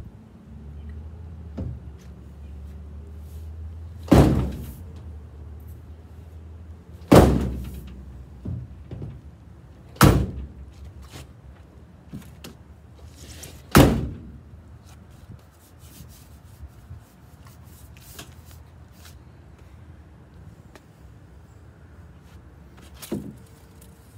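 Four loud thuds from the steel cab door of a 1948 Ford F1, a few seconds apart, each with a short ringing tail, as the door's fit in its opening is being adjusted. A run of faint taps and clicks follows.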